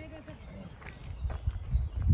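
A few soft, low thuds of footsteps on a gravel path, irregular and coming in the second half.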